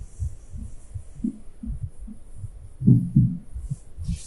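Marker writing on a whiteboard: soft, irregular low thuds as the pen strokes press on the board, with a faint steady hiss, a little busier about three seconds in.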